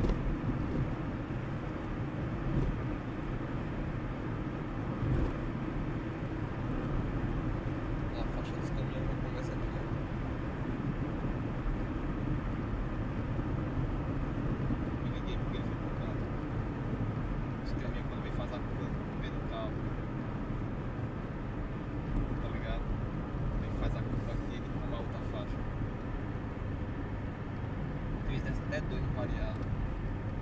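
Steady road noise inside a moving car: engine and tyres on asphalt at cruising speed, with faint, indistinct voices at times.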